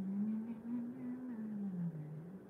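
A woman humming one long, low note that rises slightly and then sinks away near the end.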